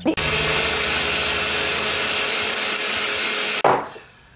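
Countertop blender running at a steady speed, a high whine over the motor and blade noise, then switched off abruptly about three and a half seconds in.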